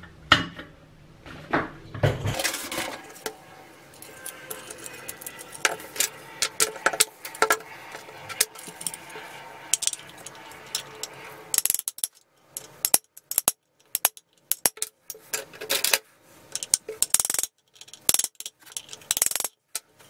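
Metal clicks, clinks and scrapes from a rusty sheet-steel lantern housing being handled and worked on with a screwdriver. The clicks come thick and fast in the second half, broken by short silent gaps.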